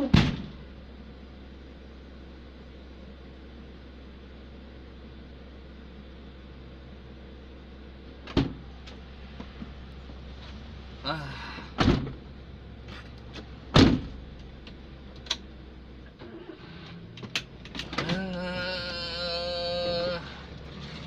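Ambulance engine idling with a steady low hum, broken by several loud door thumps and slams: one at the start, then others about 8, 12 and 14 seconds in. The engine hum stops about 16 seconds in.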